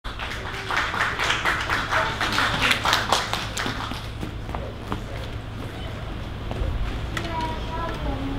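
An audience applauding for about three seconds, dying away. Near the end a grand piano begins to play.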